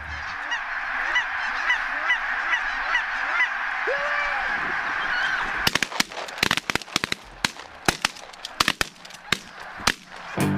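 A large flock of geese honking together, many overlapping calls. A bit past halfway the honking fades back and a rapid, irregular run of sharp cracks takes over.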